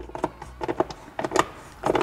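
A few light, scattered clicks and taps as a coarse-thread factory bolt is turned by hand into a plastic push-pin type insert in the fender liner.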